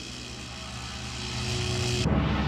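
A steady low drone with a wash of hiss above it, swelling in loudness toward the end: a build-up transition effect in an animated intro.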